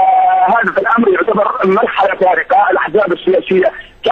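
Speech only: a man talking continuously in Arabic.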